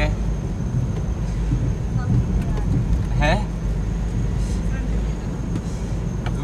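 Steady low rumble of a car's engine and tyres heard from inside the cabin while driving. A brief voice sound cuts in once, about three seconds in.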